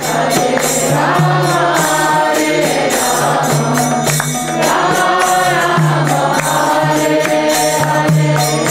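Devotional kirtan: a group of voices singing a chant in phrases over a steady low drone, with a running jingle of small percussion.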